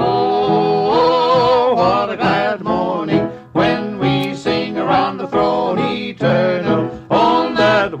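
Two men singing a southern gospel song in harmony with instrumental accompaniment. It opens on a long held note with vibrato, then moves on through the verse.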